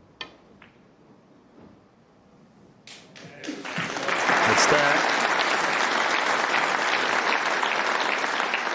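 A sharp click of the cue tip striking the cue ball, then a fainter ball-on-ball click as it hits the blue. About three seconds in, the audience breaks into applause that builds quickly and holds steady, greeting the pot that leaves the opponent needing snookers.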